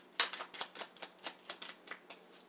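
A small deck of tarot cards being shuffled in the hands: a quick, irregular run of light card clicks, the first the loudest, stopping just before the end.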